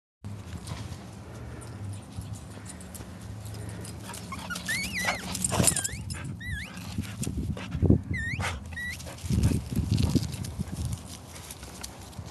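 A person making high squeaking noises with the mouth to call dogs: a run of short rising-and-falling squeaks about five seconds in, and a few more around eight to nine seconds. Beneath them, the rustle of dogs running on dry grass and leaves, louder near the end.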